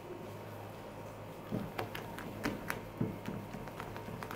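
Silicone spatula folding thick batter in a glass bowl: a few light taps and scrapes against the glass, starting about one and a half seconds in, over a faint steady low hum.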